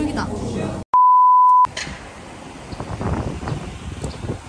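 A single electronic beep: one steady pure tone lasting under a second, about a second in, with the other sound cut away around it, as with an edited-in bleep sound effect.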